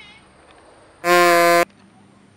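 A single loud, flat-pitched horn-like beep, reedy and buzzing, about half a second long. It starts and stops abruptly about a second in.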